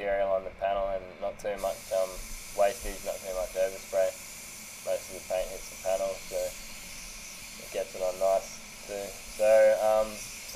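A man talking throughout, over a steady airy hiss. The hiss drops out for the first second and a half, then resumes.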